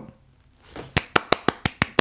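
One person clapping his hands quickly and evenly, about six claps a second, starting about a second in.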